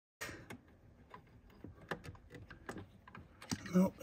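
Small, irregular metal clicks and ticks of a mounting bolt being fiddled by hand against a threaded bracket, which won't line up to catch its thread.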